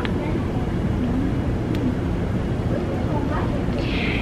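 Steady low rumble of outdoor background noise with faint voices of people outside, and a single click about halfway through.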